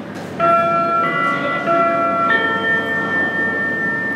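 Airport public-address chime: four bell-like notes about two-thirds of a second apart, the last held and ringing on. It is the attention tone that comes before a boarding announcement.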